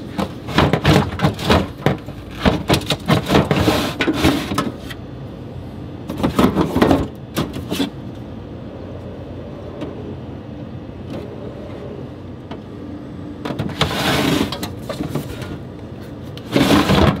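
Bottles and cans being handled in a refrigerator's plastic crisper drawer: a quick run of knocks and clatters, another around six seconds in, and a last burst near the end, with a quieter stretch between.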